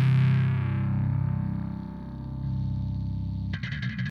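A thrash/death metal song ends on a distorted electric guitar and bass chord that rings out and slowly fades. A short buzzing burst comes in near the end.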